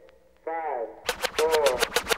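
Late-1980s hip-hop record intro: a short sampled voice phrase, then about a second in a rapid machine-gun-like burst of sharp clicks, about ten a second, over a voice.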